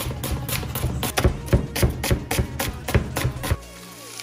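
Chef's knife slicing an onion on a plastic cutting board, quick strokes several times a second that stop about three and a half seconds in, over background music.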